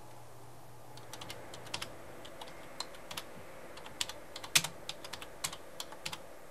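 Typing on a computer keyboard: irregular, scattered keystrokes that start about a second in.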